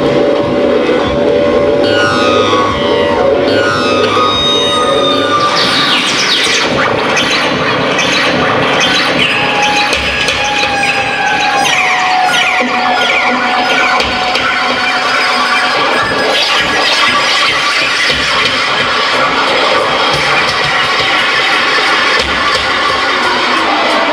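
Live rock band playing a loud instrumental passage thick with effects, full of sliding, wavering tones and no singing, heard through an audience recording.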